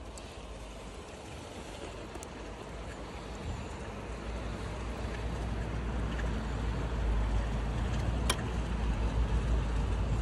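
Shallow stream water running over stones, under a low rumble that builds steadily louder; one sharp click about eight seconds in.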